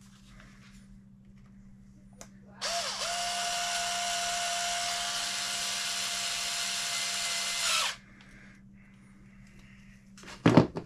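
Cordless drill/driver running steadily for about five seconds, starting about two and a half seconds in, as it drives a screw back in.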